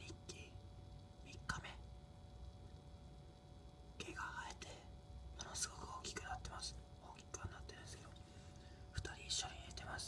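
A person whispering softly in short phrases with pauses between them, over a faint steady hum.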